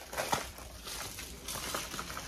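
Packaged instant yakisoba trays being handled: a light crinkling with a few small clicks.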